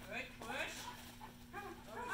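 Airedale terrier giving a few short, faint vocal calls while running the agility course.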